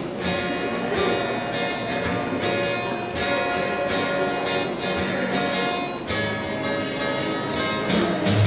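Acoustic guitar strumming an instrumental introduction, with chords sounding in a steady rhythm.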